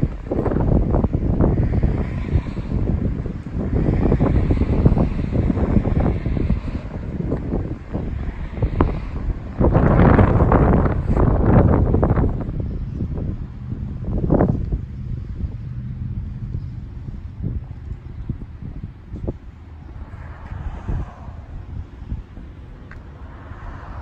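Wind buffeting the microphone in irregular gusts, heaviest in the first half and dying down after about twelve seconds.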